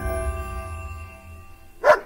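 Sustained notes of an intro music sting fading away, then a dog barks once, sharply, near the end.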